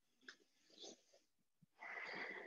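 Mostly near silence, then near the end a heavy breath through the nose with a faint whistle in it, from a man exerting himself during lunges.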